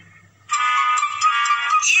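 A steady, high whistle-like tone held for just over a second, starting about half a second in after a brief lull: a cartoon sound effect.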